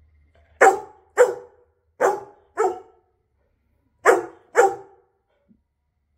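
A yellow Labrador retriever barking six times, in three pairs of short, loud barks with pauses between. The owner reads them as the dog being angry and demanding that the couple get up off the bed.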